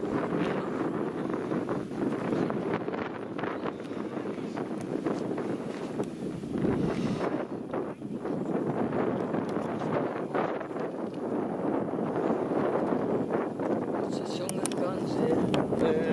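Wind buffeting the camera microphone: a steady rushing noise that swells and eases.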